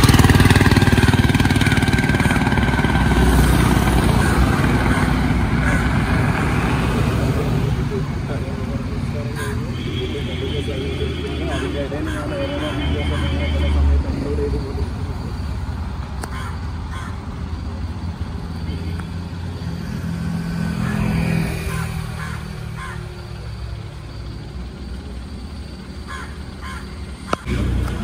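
Road traffic: a car passes close by at the start, then a steady rumble of engine and road noise that slowly fades.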